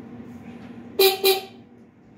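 Stealth Hunter e-bike's handlebar electric horn giving two short toots in quick succession about a second in, showing the horn works.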